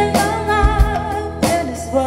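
A woman singing a slow song over electric guitar accompaniment, with deep beats underneath.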